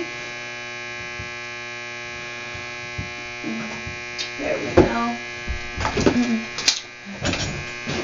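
Knocks and light clatter of a chair being worked on by hand, over a steady electrical hum. Short wordless vocal sounds from a woman come in from about halfway.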